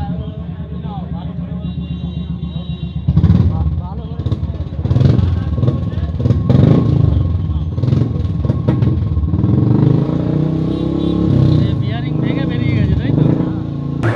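A motorcycle engine running: idling with an even, quick pulse for the first three seconds, then louder and more uneven, with voices in the background.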